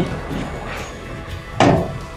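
Soft background music, then about one and a half seconds in a single short clunk as the stainless-steel lid of a helmet washing machine cabinet is swung open.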